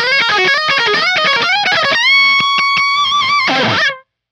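Gibson 1958 Korina Explorer reissue electric guitar played dry, with no reverb, through a MESA/Boogie Mark VII amp: a fast pentatonic lead run of rapid single notes. About halfway through it settles on one long held note with vibrato, which drops in pitch near the end and cuts off abruptly.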